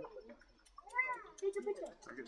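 A snow leopard gives one short mew about a second in, its pitch rising and then falling, followed by brief low voices.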